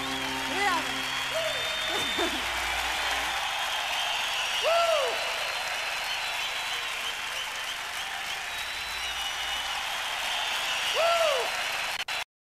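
Audience applauding with scattered whistles as the last chord of the song dies away in the first couple of seconds. Two rising-and-falling whoops from the crowd come about five seconds in and near the end.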